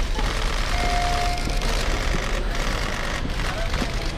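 Airport terminal concourse noise as loaded luggage trolleys are pushed across the floor, with a single steady electronic beep about a second in that lasts just under a second.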